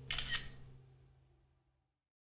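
A camera shutter click sound effect, two quick snaps in close succession just after the start, over the tail of background music that fades out.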